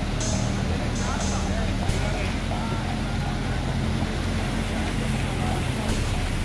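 The Bhagirathi River in flood, a fast, silt-laden torrent, making a steady, loud rushing roar with a deep rumble underneath. Faint voices can be heard beneath it.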